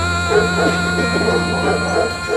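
A dog whining and yipping in a quick run of short, high calls over sustained background music.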